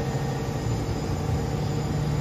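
A steady low hum over an even background noise, with no distinct events.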